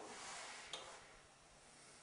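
Near silence: quiet room tone, with a fading hiss in the first second and one faint click about three quarters of a second in.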